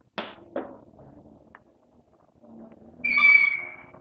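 Chalk drawn along a ruler on a blackboard: two short knocks near the start, a faint scraping, then about three seconds in a loud, steady, high-pitched chalk squeak lasting nearly a second.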